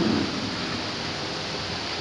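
Steady hiss of background noise, room tone, in a short gap between sentences of speech, with no distinct event.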